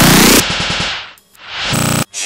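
Heavily distorted, clipped editing effect. A loud blast of sweeping, stuttered noise cuts off about half a second in. A rapid rattling stutter then fades almost to nothing and swells back into a short loud burst near the end.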